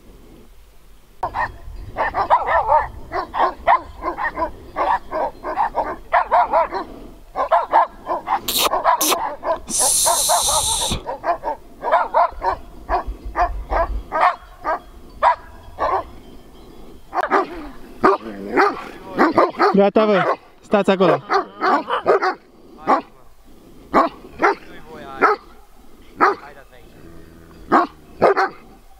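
Several large shepherd dogs barking over and over, their barks overlapping in quick runs. There is a short hiss about ten seconds in.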